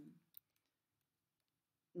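Near silence with a few faint computer keyboard keystroke clicks in the first second as a word is typed.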